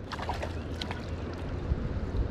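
Steady low rumble and hiss of wind buffeting the microphone, with a few faint clicks.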